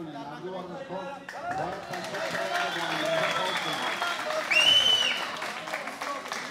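Arena crowd cheering and applauding with many voices shouting at once, building from about a second in. One shrill high note stands out near the end.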